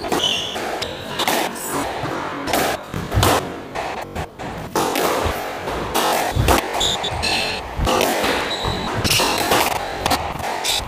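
A squash rally: the ball cracks off rackets and walls in irregular sharp knocks, mixed with short high squeaks of court shoes on the wooden floor.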